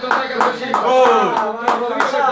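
A quick run of sharp hand claps, several in a row about a quarter second apart, over ongoing speech.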